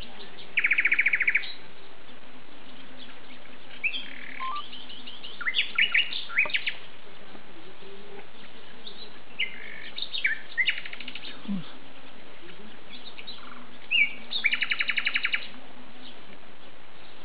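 Songbirds singing: a rapid trill about a second in and another near the end, with scattered short chirps and whistled notes between, over a steady background hiss.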